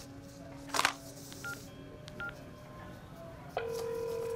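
Mobile phone keypad beeps as a call is placed, two short tones, then a steady ringing tone that starts near the end as the call rings through.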